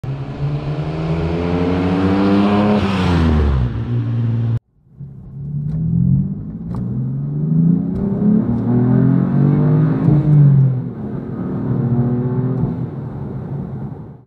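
1967 Austin-Healey 3000 Mark III's three-litre straight-six accelerating, its pitch rising through the revs. It cuts off suddenly about four and a half seconds in, then a second run climbs and falls again as the engine pulls and eases off.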